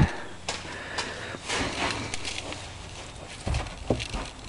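Sand being scooped and poured over root vegetables in a barrel: irregular hissing and scraping pours with a few small knocks, and a dull thump near the end.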